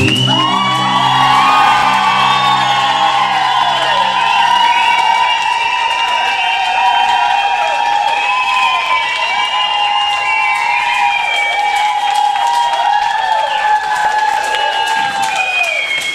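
Audience cheering, whooping and applauding as a song ends. A low held note from the music runs on underneath and stops about four seconds in.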